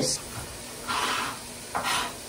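Cake batter being poured from a stainless steel mixing bowl into a metal baking pan, with two short soft rasps, one about a second in and a shorter one near the end.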